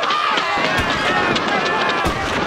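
Several men shouting together as they charge past on foot, with running footsteps and a few thuds.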